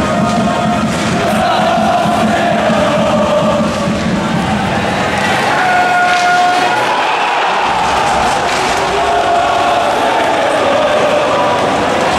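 Ice hockey crowd chanting and singing together in the arena, with held, wavering notes over a steady din of many voices.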